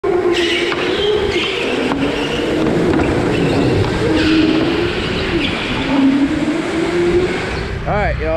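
Go-karts racing on an indoor track, their motor pitch rising and falling with speed, with short higher-pitched squeals as they corner.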